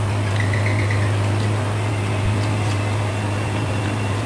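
A steady low electrical hum with an even hiss, like a running fan, under faint soft clicks of fingers mixing rice on a steel plate. A brief high warble comes about half a second in.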